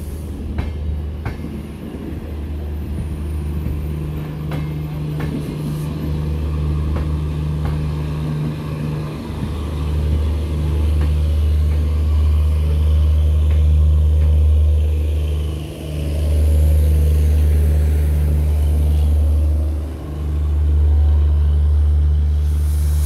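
Departing express train's LHB passenger coaches rolling past, a loud, steady low rumble that grows louder about halfway through. Scattered clicks and clanks from the wheels and running gear come in the first few seconds.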